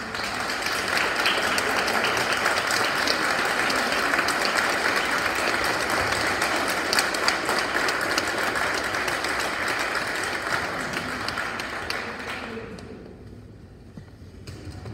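Audience applauding a choir, building up quickly and dying away near the end.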